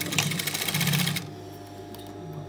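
Industrial sewing machine stitching a hem at a fast, even rate, then stopping a little over a second in, leaving only a faint hum.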